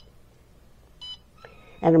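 Bartlett RTC-1000 kiln controller keypad giving one short, high beep about a second in as a key is pressed. The entry is accepted: the 1100 °F ramp target is stored and the controller moves on to the hold-time setting.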